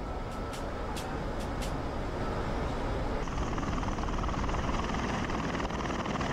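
Bell Boeing V-22 Osprey tiltrotor running, a steady rushing noise of rotors and turbine engines that grows a little louder and brighter about three seconds in.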